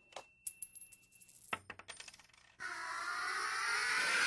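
Quiet metallic clinks and ticks, some with a short high ring. About two and a half seconds in, a swell of noise takes over and grows steadily louder.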